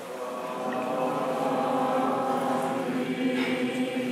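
Choir singing an Orthodox liturgical chant, several voices together in long held notes.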